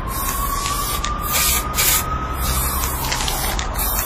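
Aerosol spray-paint can hissing in a series of short bursts, one after another, with a faint held tone beneath.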